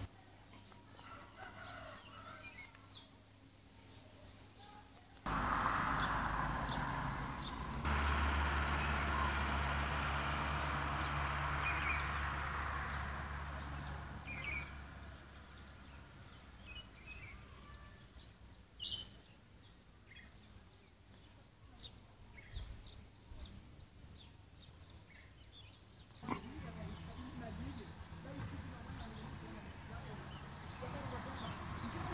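Outdoor ambience with small birds chirping and a rooster crowing. A louder stretch of rumbling noise with a low hum begins suddenly about five seconds in and fades by about fifteen seconds.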